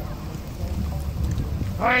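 Steady low rumble of wind buffeting a phone microphone outdoors, with faint street ambience. A person's voice cuts in near the end.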